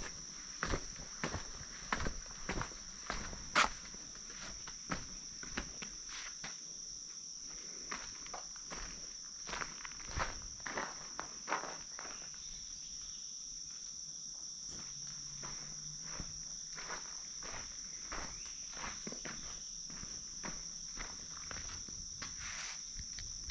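Footsteps on rock and gritty dirt: a run of crunching steps down stone stairs, thinning out past the middle and picking up again near the end. A steady high-pitched insect chorus carries on underneath throughout.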